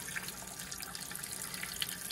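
A thin stream of water runs steadily from a caravan mixer tap, opened on hot, into a white bowl basin and over a hand held under it, making a light, even splash.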